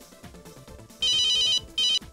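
Smartphone ringtone for an incoming call: a steady high beeping tone starts about a second in and lasts about half a second, then comes again briefly just before the end.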